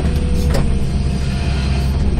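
Hydraulic excavator's diesel engine and hydraulics running steadily, heard from inside the operator's cab as the bucket digs, with a brief knock about half a second in.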